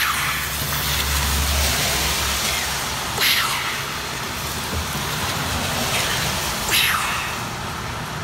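Cars passing on a wet street, tyres hissing through the water, with a low engine rumble early on and two louder swishes about three and seven seconds in.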